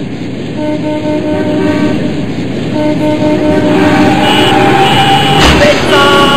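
City traffic with many car horns honking, several long held horn notes overlapping over a rush of traffic noise and growing louder, with a short sharp crack about five and a half seconds in.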